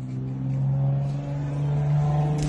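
A motor vehicle's engine running, its note rising slowly as it speeds up.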